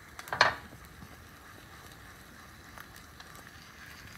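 A carbon steel skillet clanks once against a gas stove grate as it is lifted and tilted, about half a second in, followed by a faint steady hiss of an egg frying in oil.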